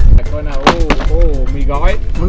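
Wind buffeting the microphone as a loud low rumble that cuts off just after the start. A man then exclaims "oh, oh" over background music with a steady beat, with two sharp clicks about two-thirds of a second in.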